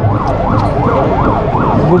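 A siren sounding in fast rising-and-falling sweeps, about three a second.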